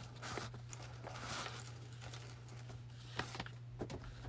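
Faint rustling of ripped fabric and cheesecloth being tucked and adjusted by hand, with a couple of light taps near the end.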